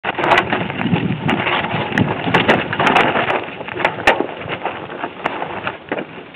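Mountain bike rolling over loose rocks and stones, tyres crunching on the gravel with many sharp clicks and knocks of stones and bike parts. Busiest and loudest in the first half, easing off toward the end.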